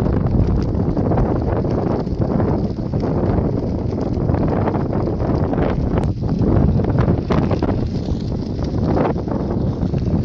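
Strong wind buffeting the microphone in the open: a loud, steady low rumble with faint scattered crackles.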